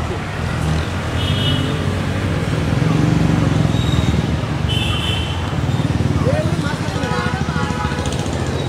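A motor vehicle's engine running steadily with a low rumble, among street traffic, with voices in the background and two brief high tones.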